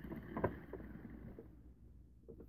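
Faint handling noise from a plastic Pie Face game and the player's hands, with a soft click about half a second in.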